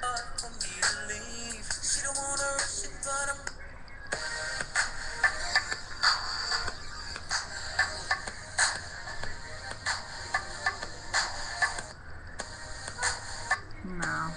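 Recorded music starts playing, with a regular beat, and briefly thins out twice.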